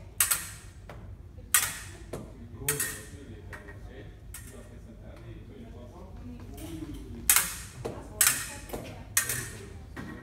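Fencing blades striking each other in a parry-and-riposte drill: about half a dozen sharp metallic clicks, each with a brief ring, several near the start and a quicker run in the second half.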